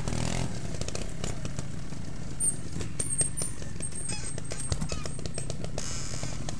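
Trials motorcycle engine running at low revs, with many irregular clicks and crackles over a steady low rumble.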